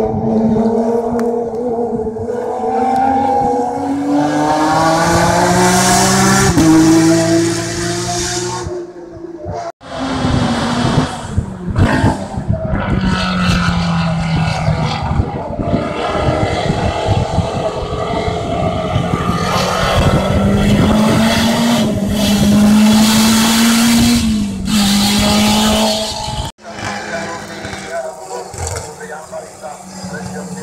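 Race car engines at full throttle on a hill-climb course, the pitch climbing through the gears and dropping back at each upshift as cars run past the curve. The sound cuts out abruptly twice.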